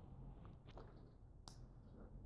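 Near silence, with a few faint clicks from a small coin being handled in the fingers before a toss.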